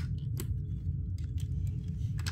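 Several light, scattered plastic clicks and taps as a child's fingers press on snap-together circuit pieces on a plastic base grid, over a low steady rumble.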